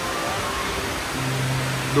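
Steady rushing of a tall indoor waterfall, water sheeting down a wall into a pool, with faint music behind it.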